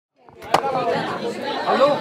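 Overlapping voices of several people talking at once, with a sharp click about half a second in; one voice says "Hello?" near the end.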